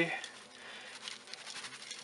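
Dry spice rub poured off a paper plate, pattering faintly onto a raw pork shoulder in a bowl.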